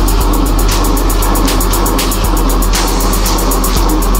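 Electronic-style music: a deep, steady bass drone with rapid, evenly spaced ticks on top and regular swells in the highs.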